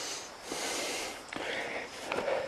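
A person breathing heavily close to the microphone, with noisy in- and out-breaths about once a second, and a few light knocks in between.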